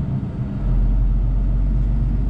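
Truck engine and road noise heard from inside the cab while driving: a steady low drone that dips briefly in the first half second, then comes back stronger.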